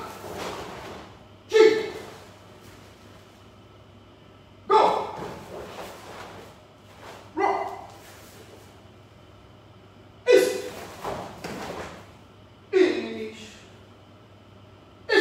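Karate practitioners' sharp, voiced breath exhalations, one with each technique of a kata. There are five, about every two and a half to three seconds, each a sudden burst that fades quickly.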